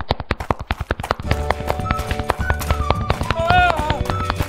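Cartoon sound effect of rapid tapping footsteps, a fast run of sharp clicks. Upbeat background music joins about a second in. A short wavering cartoon vocal sound comes near the end.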